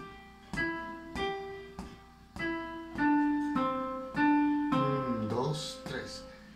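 Electronic keyboard on a piano voice playing a simple three-beat melody one note at a time, a new note about every 0.6 s, moving from higher notes down to lower ones. A short spoken phrase comes near the end.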